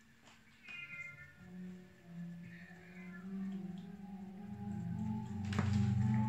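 A cat meows briefly about a second in, then film music swells and grows steadily louder, from a film soundtrack playing in the background.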